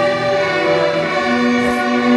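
Student string orchestra of violins, violas and cellos playing long, held chords.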